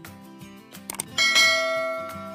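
A few quick clicks, then a bright bell-like chime a little after a second in that rings on and fades, over soft background music.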